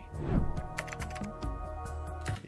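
Sustained background music, held tones from the news report's score, with several sharp clicks, like keyboard or mouse clicks, over it.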